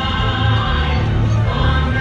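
Christmas parade soundtrack played over loudspeakers: a choir singing over a full musical backing with a strong, steady bass.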